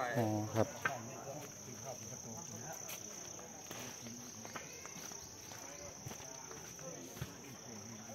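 Insects in the surrounding dry forest keep up a steady, unbroken high-pitched drone, with faint voices of people walking along the path.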